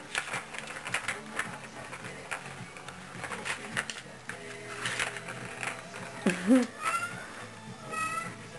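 A plastic ball clicking and knocking in a circular plastic track toy as a kitten bats at it, in scattered short clicks. Near the end a short voice-like call rises and falls, followed by a brief thin high tone.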